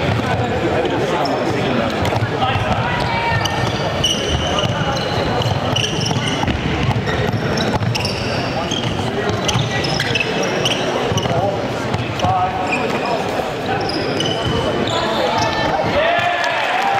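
Sneakers squeaking in many short high chirps and footfalls thudding on a hardwood gym floor as players run and cut, under constant talk and calls from players and spectators.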